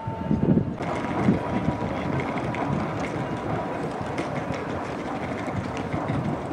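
Old red electric rack railcar of the Pilatus Railway running on its steep Locher rack track: a steady rumbling rattle, with a faint high whine coming in about a second in.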